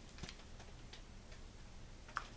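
A few faint, short clicks over a low room hush as a glass lid is lifted off a glass jar candle, the clearest about a quarter second in.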